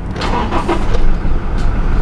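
Eighth-generation Toyota Hilux engine being started on the ignition key: a brief crank, then it catches about a second in and runs on at a steady idle.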